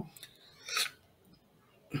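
A brief hiss-like burst of noise about two-thirds of a second in, otherwise near silence.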